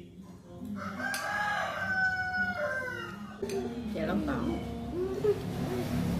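A rooster crowing once in the background: one long call of about two seconds, held and then falling at the end. It is followed by softer, wavering calls.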